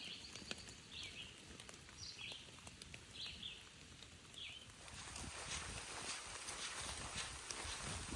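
A bird gives a short, high call about once a second, five times. From about five seconds in, a hiker's footsteps on a dirt trail take over.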